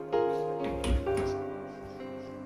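Soft background music of sustained keyboard notes, each note starting and then fading away.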